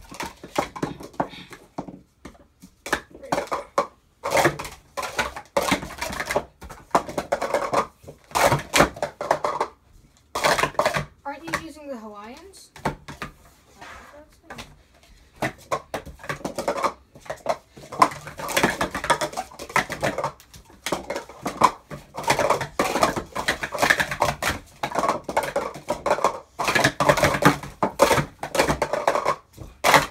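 Plastic sport-stacking cups being stacked up and down at speed in a timed cycle run, a rapid clatter of cup rims knocking together and on the table mat in bursts.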